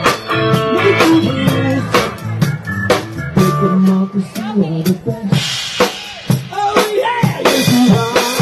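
Live band playing an instrumental passage: drum kit keeping a steady beat under electric guitar. About five seconds in, cymbals come in and wash over the rest.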